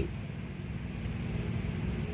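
Steady low background hum with no speech.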